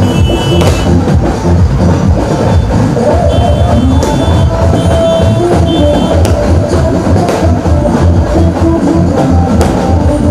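Loud music with a heavy, steady bass beat and a few held melody notes, a few sharp hits cutting through it.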